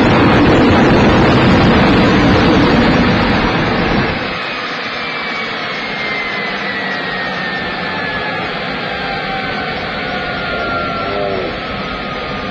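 Homemade jet (gas turbine) engine running with a loud, dense roar. About four seconds in the roar drops to a lower steady level, and a faint whine then slowly falls in pitch.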